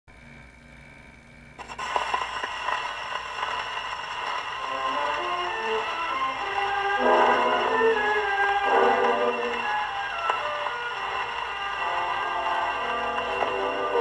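Supraphon Supralion portable wind-up gramophone playing a 78 rpm shellac record. The needle drops into the groove with a click about one and a half seconds in, and a waltz starts over steady surface hiss.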